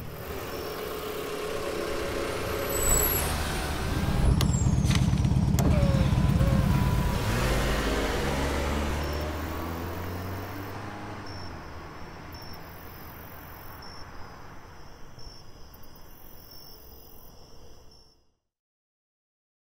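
Car engine running, swelling into a strong low rumble about four seconds in, then fading steadily away as the car drives off.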